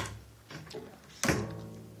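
Double bass strings ringing. A low note fades out in the first half second, then about a second in a string is struck sharply and its low note rings on, fading away.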